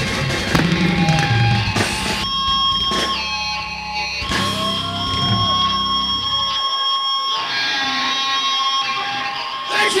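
Live heavy metal band playing: electric guitar holding long, bending notes over bass and drums. The bass and drums drop out briefly about two-thirds of the way through.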